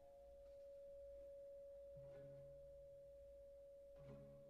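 Symphony orchestra playing very softly: a single high note held steadily, with a soft low note coming in underneath about halfway through.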